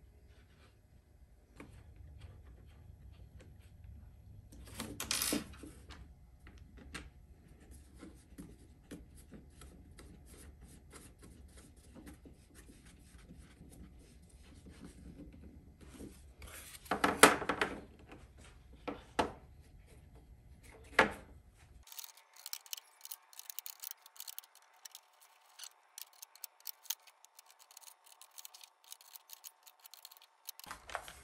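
Hands assembling a laser-cut wooden tray with 3D-printed standoffs and screws: rubbing, scraping and small clicks of the parts, with louder knocks about five and seventeen seconds in. After a cut about twenty-two seconds in, a quick run of light clicks and taps as plastic end mill cases are set into the tray's holes.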